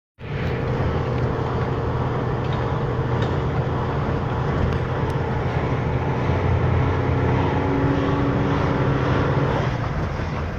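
Steady engine hum and road noise of a car driving slowly, heard from inside the cabin.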